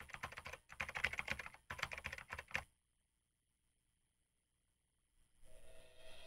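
Typing sound effect: rapid key clicks in three quick runs over about two and a half seconds, then silence. Faint music begins to rise near the end.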